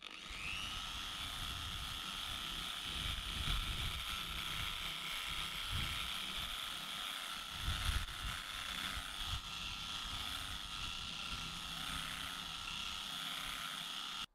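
Electric polishing machine with a foam pad running on a plastic headlight lens. Its motor whine rises briefly as it spins up, then holds steady over an uneven rumble from the pad working the lens.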